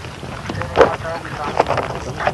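Indistinct voices talking, with wind rumbling on the microphone.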